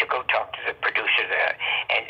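Speech only: a person talking continuously, with short pauses between words.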